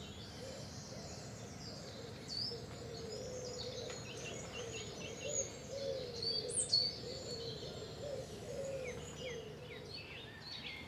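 Birds singing: several birds chirping and trilling in short high phrases, with a lower wavering cooing call repeated beneath them.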